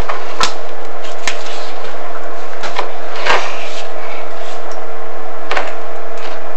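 Steady hiss with a constant hum, as of the inspection camera's recording noise, broken by a few short sharp clicks.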